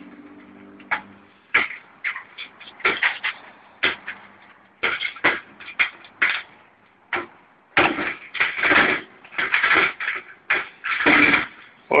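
Thin sheet metal being pried and wrenched apart with a hand tool: irregular metallic clicks and knocks, turning to longer bursts of scraping and rattling in the last few seconds.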